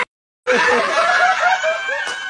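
Men laughing: a run of quick, repeated ha-ha pulses that starts about half a second in, after a brief cut to silence.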